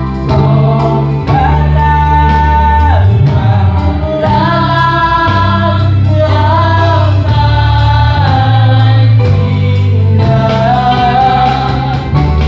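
A small mixed worship team singing a hymn together through microphones, holding long notes, over a steady low accompaniment.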